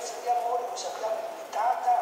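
A person's voice.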